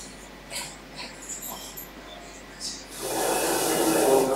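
Soft breathing and small sniffing noises close to a microphone, then about three seconds in a louder, longer rush of breath or stifled laughter.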